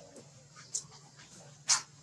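Baby macaque giving two short squeaky whimpers, the second louder and near the end.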